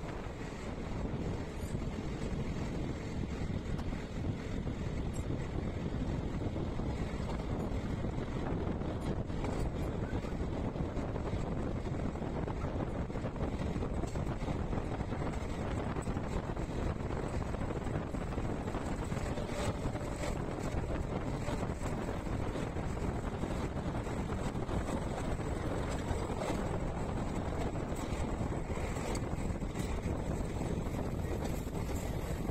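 Wind buffeting the microphone, held outside a moving passenger train, over the steady running noise of the coaches on the track, with scattered faint clicks.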